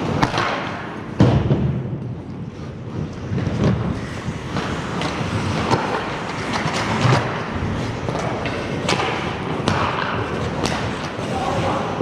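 Ice hockey skates scraping and carving across the ice, broken by sharp clacks and thuds of sticks on the puck and of the puck off the boards. The loudest hit is about a second in.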